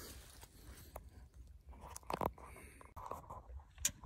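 Footsteps through forest-floor leaf litter and grass: soft crunching and rustling, with one louder crunch about two seconds in.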